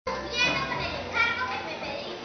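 Children's voices, high-pitched, calling out in two short stretches about a third of a second and just over a second in.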